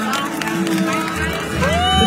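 Live concert music: a singer's voice over the band's accompaniment, with the bass coming in about a second in and a long, high held note starting near the end.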